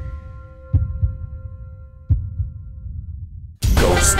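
Trailer sound design: a sustained synth chord fading out under two deep heartbeat-like double thumps about a second and a half apart. Loud music cuts in near the end.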